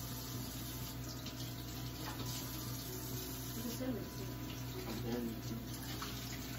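Kitchen faucet running steadily into the sink while baby bottles are rinsed under it.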